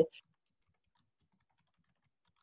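Near silence after a woman's speech cuts off at the very start, with one short breath or hiss just after it.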